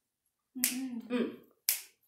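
A slow beat struck out by hand: two sharp cracks about a second apart, with a woman's voice calling "come on" between them.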